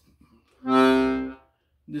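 A Salanti accordion with hand-made reeds sounding one note from its left-hand bass buttons, held for about a second at a steady pitch and then cut off.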